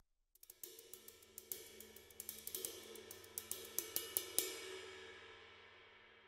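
A cymbal played softly with dowel sticks: a run of many quick, light taps, about five a second, for roughly four seconds. The cymbal rings on under the taps and fades out near the end.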